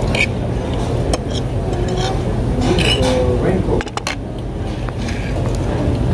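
Forks clinking and scraping on dinner plates, with a few sharp clicks, over background voices and a steady low hum.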